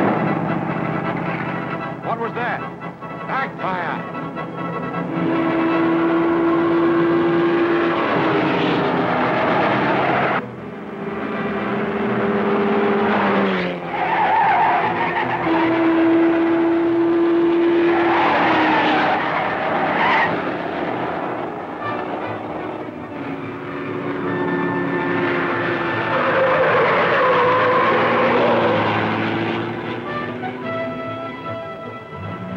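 Film score music with long held notes, played over a car being driven on a dirt road.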